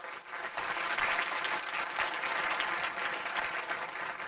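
Audience applauding in a lecture hall, swelling about half a second in and then holding steady.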